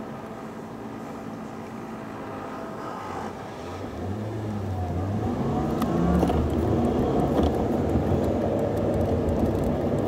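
A car engine and road noise, quiet at first, growing steadily louder from about three seconds in as the car pulls away and picks up speed.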